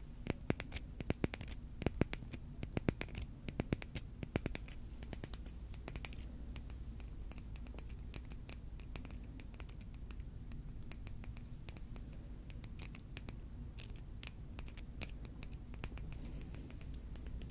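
Long fingernails tapping and scratching on a smooth, flat stone, close to the microphone. Quick runs of taps over the first few seconds give way to sparser, softer scratching, and another run of taps comes near the end.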